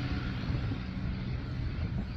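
Steady road traffic noise: a low rumble with a faint engine hum, as of vehicles running on a highway.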